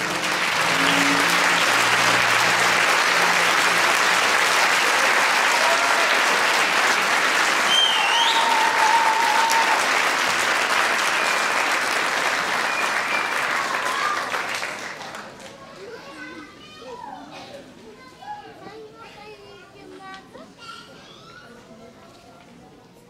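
Audience applauding for about fifteen seconds, then dying away to quiet chatter of voices.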